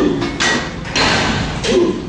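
A lifter's loud, forceful breaths and short grunts of effort as he pushes a seated chest press machine, about four in quick succession, with a thud.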